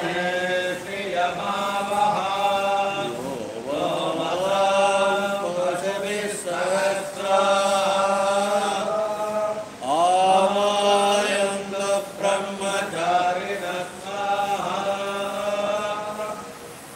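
Male voices chanting Vedic-style mantras in a continuous, sing-song recitation, the liturgy that accompanies a Hindu temple thirumanjanam (ritual bathing of the deity), over a steady low hum.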